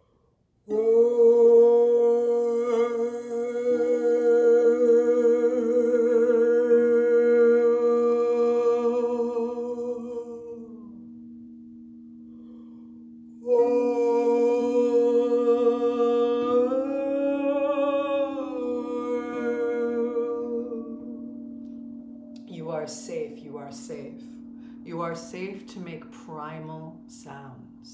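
A woman sings long wordless held tones, two phrases of about ten and seven seconds, over a steady low drone of crystal singing bowls that carries on between the phrases. Near the end come short, broken vocal sounds.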